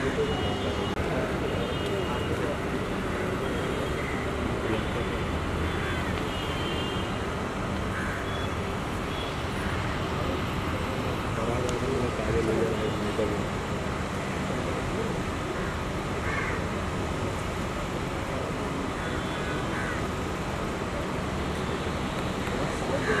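Steady background hum of road traffic with scattered, indistinct voices of people nearby.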